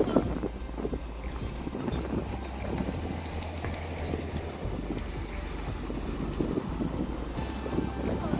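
Wind buffeting the microphone outdoors: a steady, uneven low rumble.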